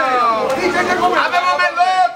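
A market vendor calling out loudly in long, drawn-out sing-song cries in the manner of a Palermo street-market call, the pitch sliding down at the start, with other voices and chatter overlapping in the middle.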